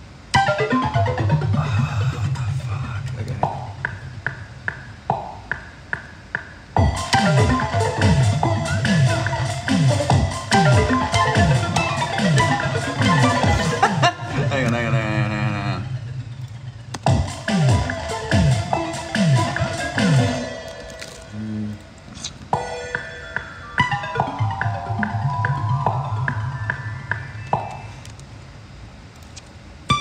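Electronic music: a synthesizer melody over a deep bass and drum-machine hits, with a run of bass notes sliding down in pitch through the middle. It breaks off briefly twice and comes back in.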